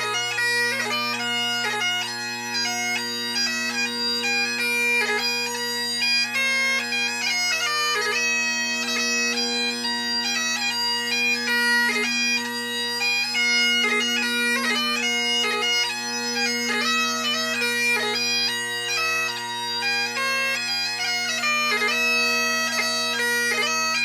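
Great Highland bagpipe playing a 6/8 march: the chanter carries the melody with quick grace notes over the steady, unbroken hum of the drones.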